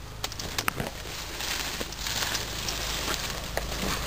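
Tall grass and reed stems rustling and crackling as they brush against a walker pushing through them, with a few sharp clicks and snaps of stems; the rustle swells somewhat in the middle.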